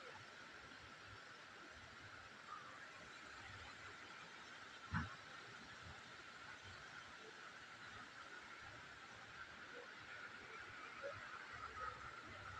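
Quiet outdoor ambience: a faint steady hiss with one short thump about five seconds in.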